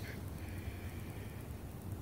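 A deep, drawn-out breath in, heard as a faint, steady rush of air.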